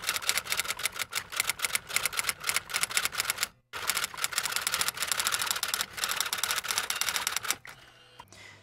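Typewriter-style keystroke clacking, about eight strokes a second, with a brief break a little past halfway. It stops just before the end.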